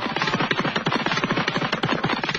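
A rapid, even fluttering rattle of about twenty clicks a second, at a steady level.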